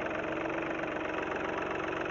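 Vehicle engine running steadily, with a low, even pulsing.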